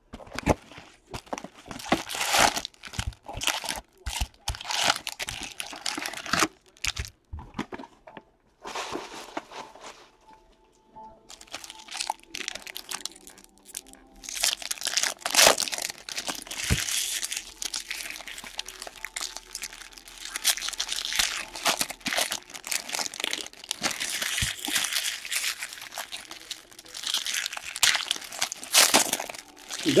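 Wrappers of 2017 Bowman Baseball Jumbo card packs being torn open and crinkled by hand, in quick, irregular bursts of crackling with brief pauses.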